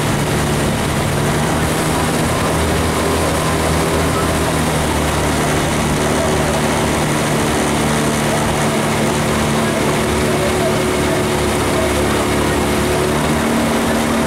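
Outboard motor of a coaching launch running steadily at cruising speed, a continuous engine hum with a constant pitch.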